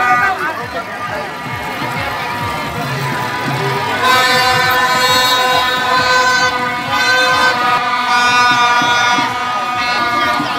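Street procession noise: voices and general crowd sound, with a loud, steady blaring horn-like tone that comes in about four seconds in and holds for some five seconds.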